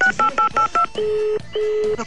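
A telephone call being placed: a quick run of short dialing beeps in the first second, then two long steady ringback tones as the line rings.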